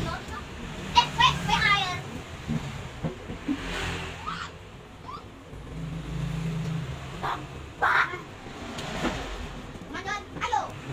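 Children's voices talking and calling out in short bursts in the background.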